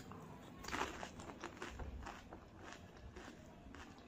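A whole pani puri, its crisp fried shell filled with spicy water, crunching as it is bitten in the mouth about a second in, followed by wet chewing with small crackles that gradually thin out.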